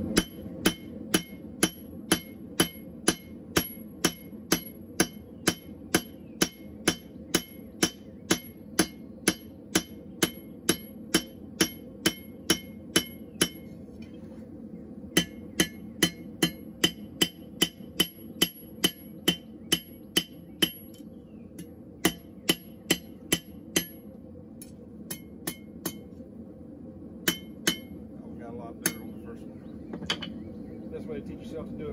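Hand hammer forging a red-hot steel bar on an anvil, a steady run of about two blows a second, each strike ringing. The hammering breaks off briefly about halfway through, picks up again, then thins to scattered blows near the end.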